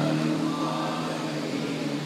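A man's voice holding one long, steady chanted note, easing off slightly toward the end.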